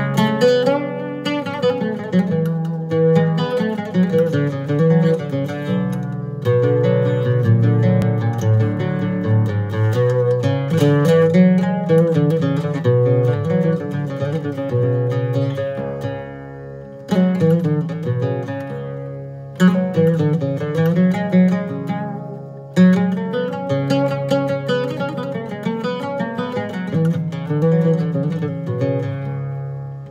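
Handmade oud played solo with a plectrum: a melody of single plucked notes on its paired strings. Phrases fade and new ones start with a strong pluck about halfway through, then twice more a few seconds apart.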